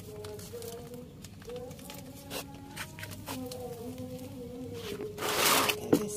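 Black plastic polybag rustling as it is handled, then crinkling loudly for about a second near the end. A faint voice holding long, wavering notes runs underneath.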